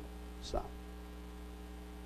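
Steady electrical mains hum, a low buzz made of several even steady tones, with one short spoken word about half a second in.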